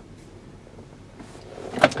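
Quiet inside a parked car's cabin: faint handling noise around the centre console, with one sharp click just before the end.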